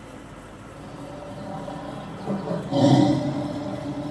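Cartoon tiger roar sound effect played through a TV speaker. It starts a little after two seconds in, is loudest about three seconds in, and fades toward the end.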